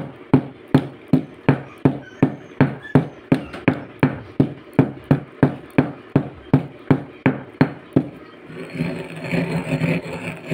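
Stone pestle pounding eggshells in a stone mortar, about three even strikes a second, crushing them toward powder. About eight seconds in the strikes stop and give way to a steadier scraping as the pestle grinds the crushed shell around the bowl.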